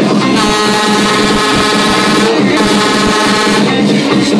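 A fairground ride's horn sounding one long, steady blast of about three seconds over loud dance music.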